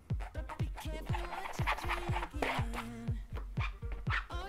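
Background electronic music with a steady beat.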